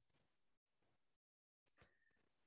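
Near silence, with the sound dropping out completely in stretches.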